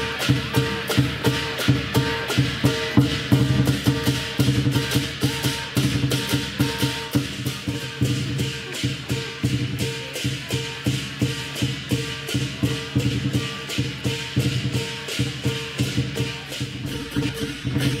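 Lion dance percussion: a large Chinese drum beaten in a fast, steady rhythm with clashing cymbals and a ringing gong.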